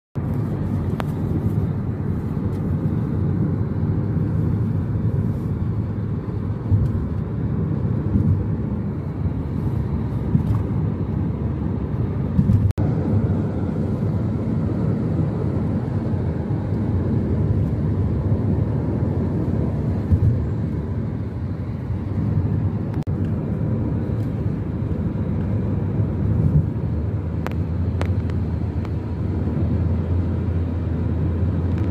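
Steady low rumble of tyre, engine and wind noise heard inside a vehicle cabin cruising at highway speed, with one short dropout about halfway through.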